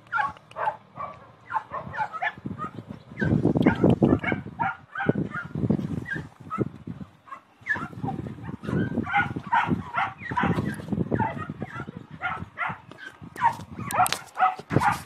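A dog whimpering and yipping in many short, high-pitched cries, over bouts of loud rustling close to the microphone.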